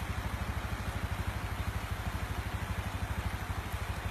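A small engine idling steadily, with an even low throb of about ten beats a second.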